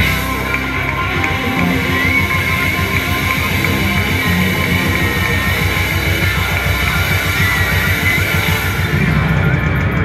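Live rock band playing loudly: an electric guitar solo with held and bent notes over drums and bass guitar.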